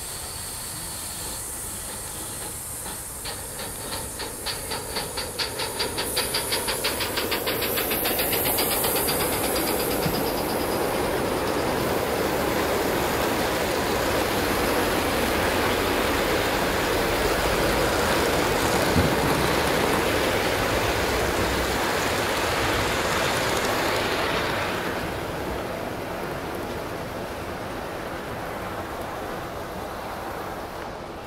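Gauge 1 live steam model locomotive in Southern Pacific Daylight livery pulling away: its exhaust chuffs speed up over several seconds until they blur into a steady hiss. The train then runs past with steam hiss and wheels clicking on the rail joints, fading a few seconds before the end.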